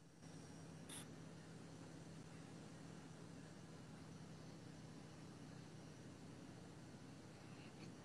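Near silence on a video-call line whose audio is cutting out: only a faint steady hiss and low hum, with one faint tick about a second in.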